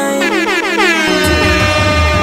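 Dancehall/reggae riddim mix with a DJ horn sound effect: a stack of tones sweeps down in pitch during the first second. The bass line drops back in just over a second in.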